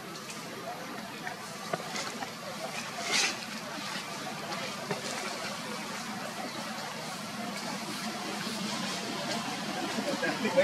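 Steady outdoor background noise with a few faint clicks and one brief high-pitched sound about three seconds in.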